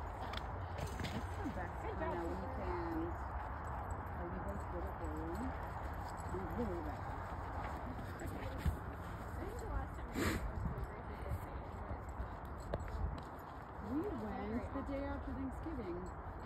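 Indistinct voices talking at a distance, over a steady low rumble. One sharp tap sounds about ten seconds in.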